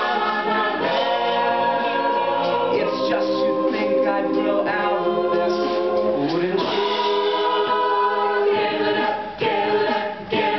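A mixed-voice collegiate a cappella group singing a pop song in close harmony, voices holding chords, with an upward slide in the harmony about six and a half seconds in.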